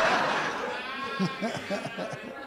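Audience laughing in a comedy club after a punchline, with one high-pitched laugh standing out in the middle.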